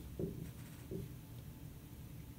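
Dry-erase marker writing on a whiteboard: a few short, separate strokes.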